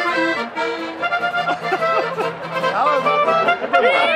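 Accordion and clarinet playing a lively folk tune in held, steady notes, with voices starting to talk over it near the end.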